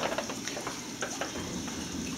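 Water trickling and spattering at a wet bench's quick-dump-rinse tank: a low, even crackling hiss with scattered small ticks.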